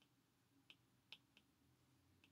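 Near silence with three faint clicks about a second in: a stylus tip tapping on a tablet's glass screen while handwriting.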